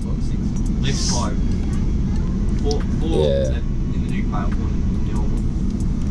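Steady low rumble of a passenger train running, heard from inside the carriage.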